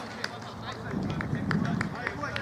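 Footballers' voices calling faintly across the pitch, with scattered short clicks and a low rumble that swells in the second half.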